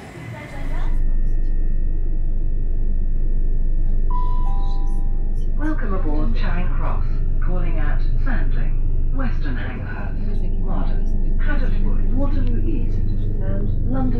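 Inside a Class 375 electric train's saloon: a steady low hum with a faint high whine, then a two-note descending chime about four seconds in, followed by a spoken on-board announcement.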